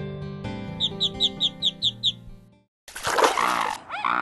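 Cartoon background music with a quick run of about seven high chirping notes. After a brief break, the ugly duckling gives a loud, rough cry that sounds nothing like a duckling's.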